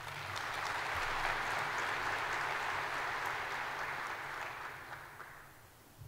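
Audience applauding, a dense spread of clapping that builds at once and dies away about five seconds in.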